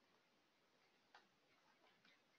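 Near silence, with a single faint mouse click about a second in.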